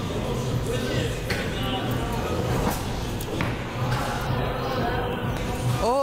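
Bowling alley din: a low, steady rumble of bowling balls rolling down the lanes, with a few short knocks and background chatter in a large, echoing hall.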